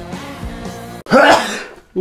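Rock music stops abruptly about a second in, and a man sneezes loudly.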